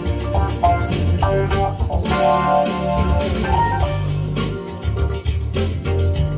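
Music: a Nord Electro 6D stage keyboard played live over a backing track with bass and drums, at a steady level with no break.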